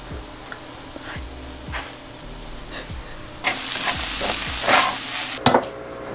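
Ground turkey sizzling in a frying pan: a few soft knocks, then a loud hiss of frying that starts suddenly about three and a half seconds in and cuts off with a click shortly before the end.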